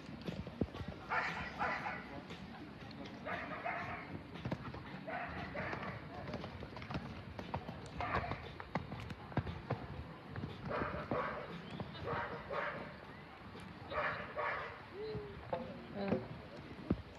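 Horse cantering on a sand arena: a steady run of dull hoofbeats, with short breathy bursts, often in pairs, every two seconds or so.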